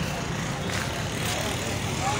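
Indistinct background voices over a steady noise bed, with no distinct foreground sound.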